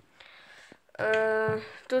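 A girl's voice holding a steady hesitation sound for about half a second, a second in, then starting a word near the end. Before it there is only faint room noise.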